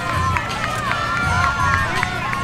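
Spectators along the course shouting and cheering at the passing runners, many voices overlapping.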